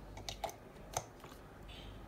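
A few small plastic clicks from a Baseus 65W charger with folding flat prongs being handled and pushed into a plug adapter, the sharpest about a second in.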